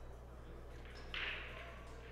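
Quiet room tone of the pool hall with a steady low electrical hum, broken a little over a second in by one short hiss lasting under half a second.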